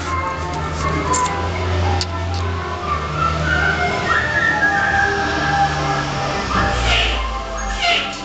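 A garbage truck's jingle playing over its loudspeaker: a simple repeating melody with a steady bass underneath. A short hiss comes about seven seconds in.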